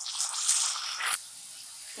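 Freshly added chopped tomatoes sizzling in hot mustard oil in a kadhai: the hiss is loudest in the first second, then settles lower and steady. A single sharp knock about a second in.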